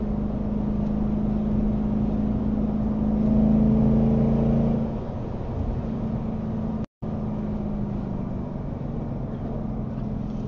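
Steady road and engine noise of a car cruising on a highway, heard from inside the cabin: a low, even hum with a drone near 200 Hz. It swells a little about three to five seconds in, then settles lower, and the sound cuts out completely for an instant just before seven seconds.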